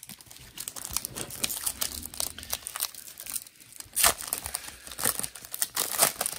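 Foil wrapper of a Pokémon TCG Lost Origin booster pack crinkling as it is handled and torn open. The crackles are irregular, and the sharpest one comes about four seconds in.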